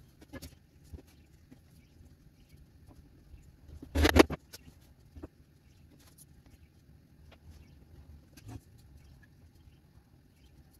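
Light handling sounds of a woodworking glue-up: scattered soft clicks and taps of a glue bottle and cedar pieces on the bench, with one loud short clatter about four seconds in.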